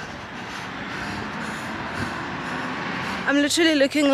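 Steady road-traffic noise that slowly grows louder over about three seconds, as of a vehicle drawing near. A woman's voice starts near the end.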